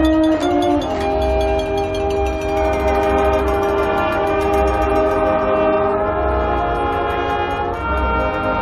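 Marching band's brass section, French horns among it, playing long sustained chords that move to a new chord every second or two, over a low drum rumble.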